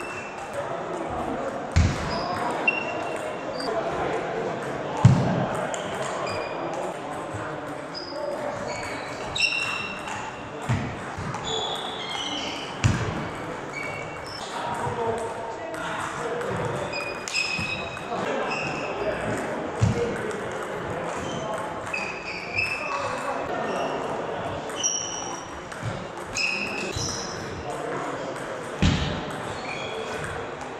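Table tennis ball clicking off bats and table in irregular rallies, with a steady babble of voices and occasional low thumps, echoing in a large sports hall.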